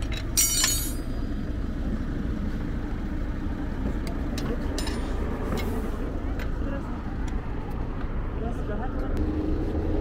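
Steady low rumble of vehicle engines by the road, with a short burst of metallic clatter about half a second in and a few scattered clicks from tools working a car wheel's nuts during a flat-tyre change.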